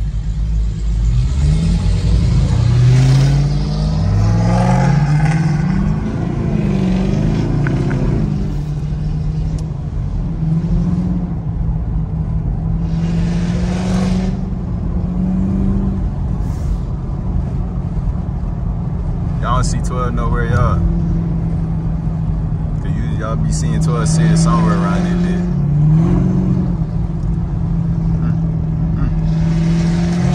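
Car V8 engines heard from inside a Camaro ZL1's cabin, rising and falling in pitch in quick revs over the first few seconds, then droning steadily while cruising.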